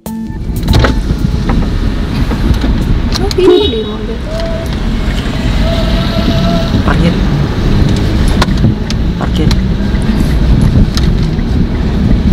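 Steady road and engine rumble inside a moving car's cabin, with people's voices talking over it.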